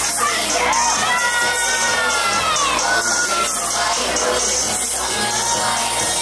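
K-pop dance track playing over loudspeakers with a steady deep bass line, while the crowd cheers and screams over it, the high screams most prominent in the first half.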